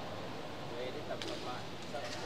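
Faint background voices talking, with a sharp click just over a second in.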